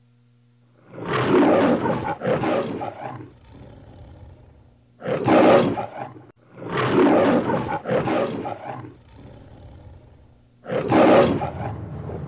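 The Metro-Goldwyn-Mayer logo's lion roar (Leo the Lion): a lion roaring four times, a few seconds apart.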